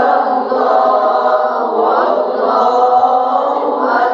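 Qur'an recitation chanted aloud in a melodic tilawah style, with long held notes and slow rises and falls in pitch.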